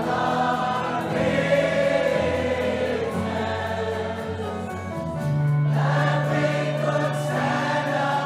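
A choir singing a gospel-style worship song with musical accompaniment, holding long sustained notes over a steady low held note.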